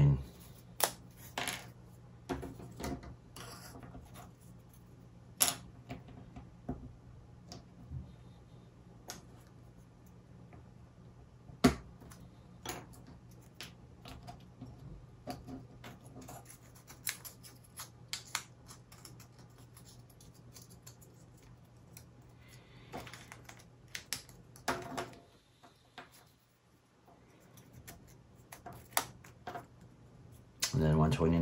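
Thin laser-cut plywood model parts being pressed out of their sheet and fitted together: scattered sharp wooden clicks and snaps, one louder snap about midway. A faint steady low hum lies beneath and stops near the end.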